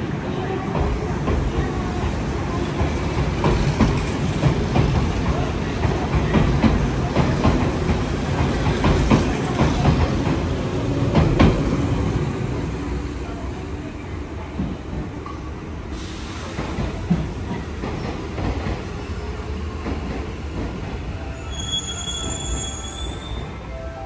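Electric train running along the track: a steady low rumble with rapid wheel clicks over the rail joints, growing louder and then easing off past the middle. Near the end a few high thin tones come in, a wheel squeal.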